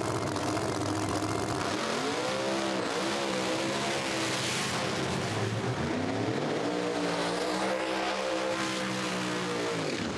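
Drag car's engine revving several times, then held steady at high revs for a few seconds before dropping off near the end.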